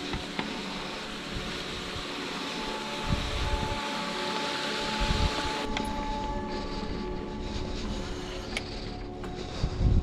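Background music with steady sustained tones, mixed with wind rushing over the microphone and a few low gusts of wind buffeting it. The wind noise thins out about halfway through.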